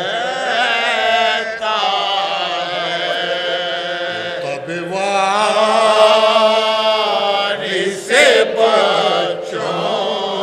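Soz-khwani, a Shia mourning elegy sung unaccompanied by a lead reciter with a group of men joining in. They hold long, wavering notes over a low sustained note, swelling louder about eight seconds in.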